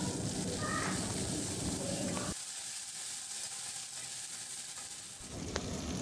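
Chopped onion, tomato and coriander leaves frying in oil in an open pressure cooker, with a steady sizzle. The sizzle drops off sharply about two seconds in and stays fainter until near the end.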